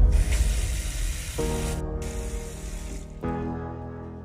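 Tap water pouring into a stainless steel bowl of lemons and oranges in a sink, loudest at first and fading away over the first few seconds. Background music with sustained notes comes in partway through.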